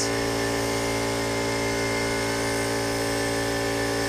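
Air compressor running with a steady, even hum, under the hiss of a compressed-air paint spray gun laying enamel on a travel trailer door.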